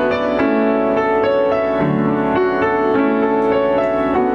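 Piano playing a slow instrumental passage without voice, a steady run of notes about two or three a second.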